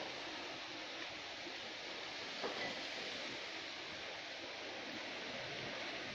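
Steady, even background noise like a hiss, with one short click about two and a half seconds in.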